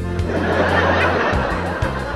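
Audience laughter, swelling about half a second in and fading out near the end, over steady background music.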